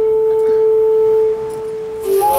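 Film background music: a single note held steady, which drops to a quieter level about a second and a half in.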